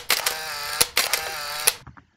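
Whiteboard marker squealing in two strokes across the board, each starting with a sharp tap; it stops shortly before the end.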